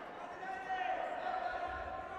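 A taekwondo referee's high, raised voice calls a short command as the bout restarts after a timeout, with a dull thud on the mat near the end.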